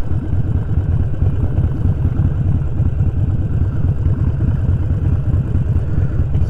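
Harley-Davidson Sportster 1200's air-cooled V-twin with Vance & Hines exhaust pipes, running steadily at low speed with a deep, even rumble.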